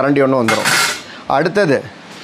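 Steel kitchen utensils, a ladle and a slotted spatula, clinking and scraping against each other in hand, with a short scraping rasp about half a second in, between brief bits of a man's voice.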